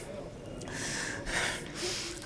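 A man's gasping in-breath over the mosque's microphone, in a pause between phrases of the supplication, with the hall's reverberation audible.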